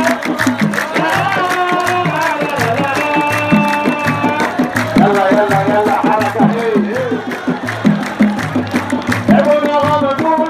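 Large hand-held frame drums beaten in a steady rhythm while a crowd of football supporters sings along, with long held notes over the drumming.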